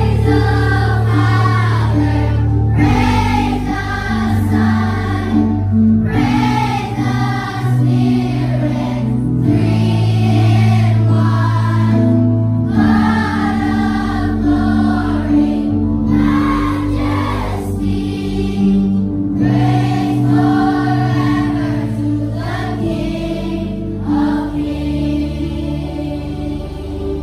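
A children's choir singing a Christmas song together in phrases, over sustained low notes from an electronic keyboard accompaniment.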